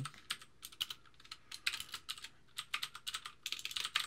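Typing on a computer keyboard: quick, uneven bursts of key clicks with short pauses between them, densest near the end.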